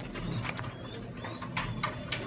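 A parent pigeon feeding its squabs in the nest at close range: scattered sharp clicks, with faint thin squeaks around the middle.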